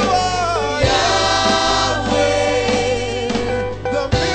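Gospel music: a choir singing held notes with vibrato over a steady bass accompaniment.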